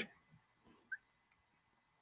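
Near silence: room tone, with one brief faint chirp about a second in.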